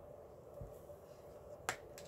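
A single sharp click near the end, over quiet room tone, with a faint low thud about half a second in.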